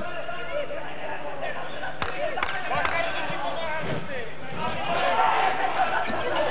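A handball bouncing a few times on the wooden court floor while several voices of players and spectators shout throughout.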